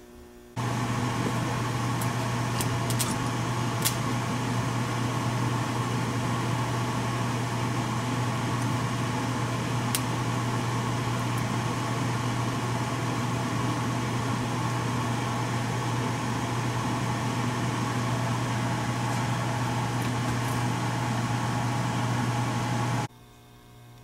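Electric soldering gun buzzing steadily with a deep mains hum while it heats a copper-to-metal lead joint on a Ford 3G alternator so the solder flows in. The gun switches on about half a second in and cuts off abruptly near the end, with a few faint ticks from the joint early on.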